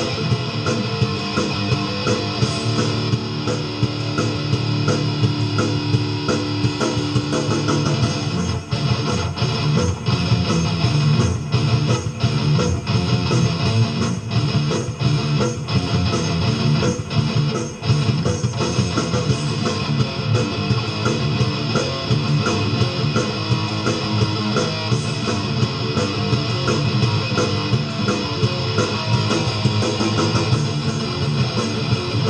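Electric guitar played continuously in an improvised heavy metal style. Between about 8 and 18 seconds in, the playing breaks into short, clipped stops.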